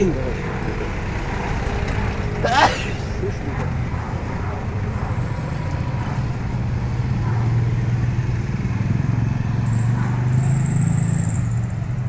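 Street traffic: a steady low hum of small motorcycle and tricycle engines running, with a short call from a voice about two and a half seconds in.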